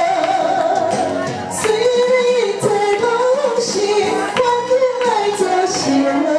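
A woman singing a slow ballad into a microphone over accompaniment music, holding long wavering notes.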